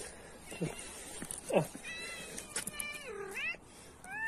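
A domestic cat meowing: two drawn-out meows about two and three seconds in, the second dipping and then rising in pitch, after a couple of shorter calls.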